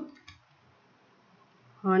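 A single light click of a computer keystroke, followed by a quiet stretch of room tone, with a voice starting again near the end.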